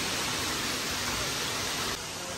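A steady, even hiss with no separate events.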